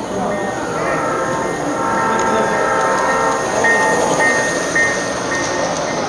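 Large-scale garden model train running along its track, drawing closer until its boxcars roll past, with voices and music around it.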